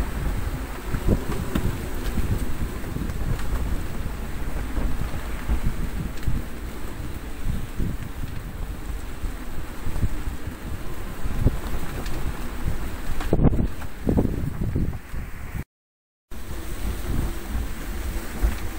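Strong wind of around 30 knots buffeting the microphone aboard a small sailboat in rough seas, a low, gusting rush with the sea beneath it. It surges in a strong gust shortly before the end, then cuts out completely for about half a second.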